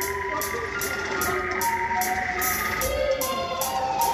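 Live band music: an electronic keyboard plays held synth notes that step and bend in pitch, over bass guitar. A steady high beat ticks about two to three times a second.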